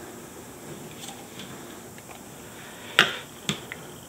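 Clear plastic ruler set down on the taped drawing paper over the plexiglass: a sharp tap about three seconds in and a lighter one half a second later.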